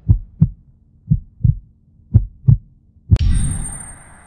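Heartbeat sound effect: three low double thumps, about one a second. About three seconds in, a sharp hit with a high steady whine that fades away.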